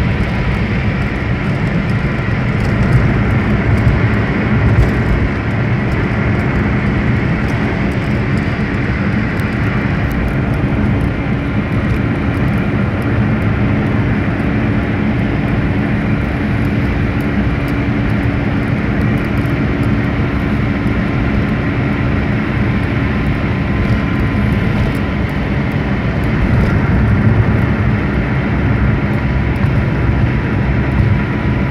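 Steady road and engine rumble of a moving car at cruising speed, heard from inside the vehicle.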